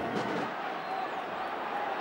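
Stadium crowd at a Gaelic football match: a steady murmur of spectators with faint distant voices.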